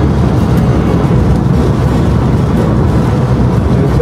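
Steady low rumble of a car in motion heard from inside the cabin: engine and road noise with no change in level.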